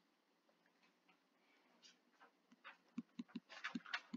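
Near silence at first, then a scatter of faint short taps and ticks in the last two seconds: a stylus writing on a tablet screen.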